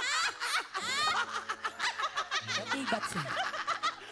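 Several people laughing at once, with a few high-pitched squeals rising over the laughter.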